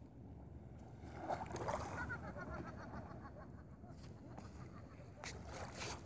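Steady low outdoor rumble with a person's voice speaking briefly from about one to three seconds in, and a few sharp clicks near the end.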